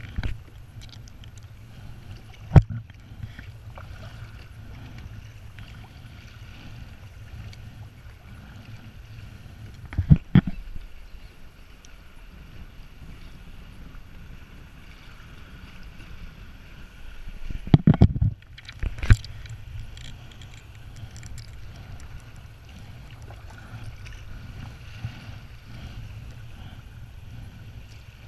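Sea water lapping and gurgling against a plastic sit-on-top kayak over a steady low rumble, broken by a few sharp knocks: one about two and a half seconds in, one around ten seconds, and a cluster near eighteen to nineteen seconds.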